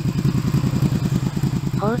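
Honda VTZ250's liquid-cooled V-twin idling steadily, a quick, even pulse of firing beats; the owner says it runs with no faults at all.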